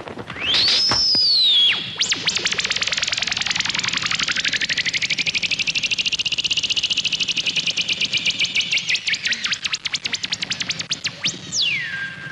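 Synthesized whooshing sound effect for a spinning acrobatic flip. An electronic tone sweeps up and back down, then a rapidly pulsing electronic whir rises in pitch, holds, and sinks again, ending in a quick falling sweep near the end.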